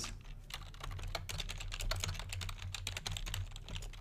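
Computer keyboard typing: a rapid run of key clicks.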